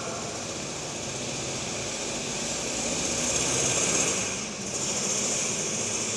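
A steady mechanical hum from a small motor or engine. It swells slightly, dips briefly about four and a half seconds in, then runs on steadily.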